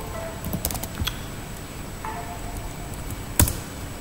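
Typing on a computer keyboard: a quick run of key clicks about half a second in, a couple more around one second, and one louder click near the end.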